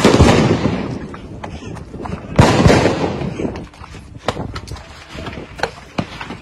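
Gunshots: two loud reports about two and a half seconds apart, each echoing away over about a second, then a few sharper, fainter cracks near the end.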